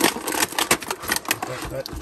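Stiff clear plastic packaging tray crackling and clicking in quick, irregular snaps as hands squeeze in and work a large action figure out of it.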